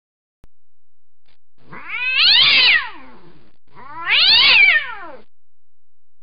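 A cat meowing twice: two long meows, each rising and then falling in pitch.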